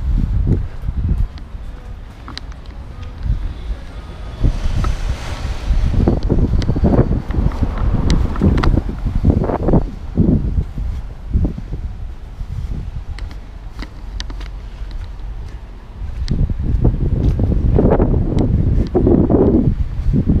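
Wind buffeting the camera's microphone in gusty low rumbles, with street traffic driving past.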